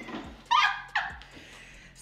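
A woman laughing hard, with two short high-pitched squeals about half a second apart.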